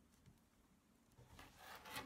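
Near silence, with faint rubbing of tarot cards sliding on a tabletop that grows a little louder near the end.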